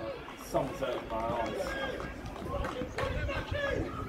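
Indistinct voices of people talking, the words not clear enough to make out.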